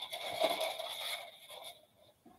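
Rustling, crackling scrape of artificial foam roses being handled and pressed together, fading out near the end.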